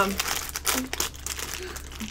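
Plastic biscuit packet and its tray crinkling as they are handled: a run of irregular crackles, busiest in the first second or so and thinning out after.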